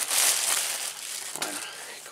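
Thin clear plastic bag crinkling as hands pull a pair of shorts out of it, loudest in the first half second and tapering off.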